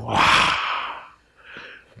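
A man's loud, breathy exclamation "wah!", pushed out like a gasp for about a second, followed by a short, softer breath.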